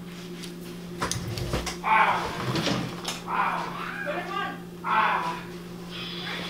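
A voice answering in short, quieter phrases, with a few knocks and handling noises about a second in, over a steady low hum.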